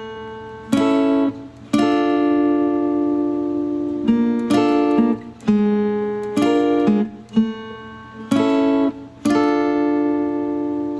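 Clean-toned Fender Stratocaster electric guitar playing fingerpicked chords. Each chord is struck sharply and left to ring out and fade, and the chords come in a phrase of small groups that repeats. No drums are heard.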